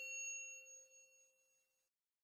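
The ringing tail of a bell-like 'ding' sound effect that marks the bell icon being pressed, dying away and fading out about a second in.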